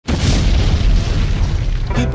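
Explosion sound effect: one sudden boom with a deep rumble that slowly dies away.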